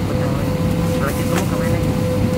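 Airbus A320 cabin on the ground: the steady hum and rumble of the cabin air supply with one constant whining tone, under the murmur of passengers' chatter. A couple of brief clicks about a second in.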